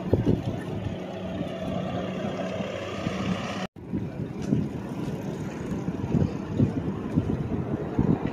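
Wind buffeting the microphone of a camera riding on a bicycle, with a steady low hum of road traffic in the first few seconds. The sound cuts out for an instant about halfway through.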